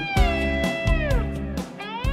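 Electric guitar lead in an instrumental rock passage: a held note that slides down in pitch, then a rising glide near the end, over drums and bass.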